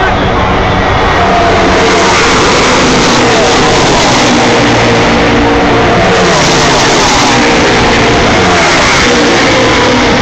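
A pack of NASCAR stock cars' V8 engines running at full speed past the fence, loud and continuous, swelling about a second in and staying loud.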